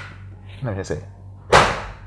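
A man's brief spoken word, then a single sharp slap-like smack about one and a half seconds in that fades quickly.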